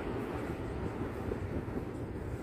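Steady low background rumble with no distinct events, slowly fading.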